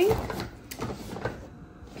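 A cardboard case of canned goods set down on a couch cushion with a thump, then light knocks and rustling as groceries are rummaged in a fabric wagon.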